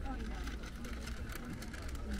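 Outdoor market ambience: faint voices of people talking nearby over a steady low rumble.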